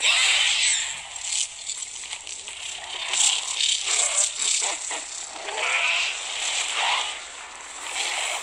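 Film sound effects of a glowing creature emerging from a meteor crater: a loud hiss and crackle that starts abruptly, then rattling, rasping noise that swells and fades several times.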